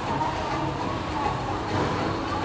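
Steady low rumble of a busy bowling alley: balls rolling down the wooden lanes and general hall din, with no single distinct impact.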